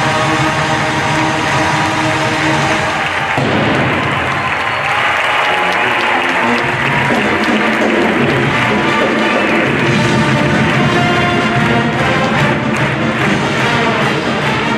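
Large university marching band with brass and percussion playing a loud sustained chord that breaks off about three seconds in, followed by audience applause and cheering. The band plays again from about ten seconds in.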